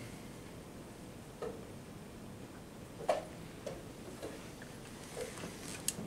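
Quiet chess tournament playing hall: low steady room noise with about half a dozen faint, scattered clicks and taps.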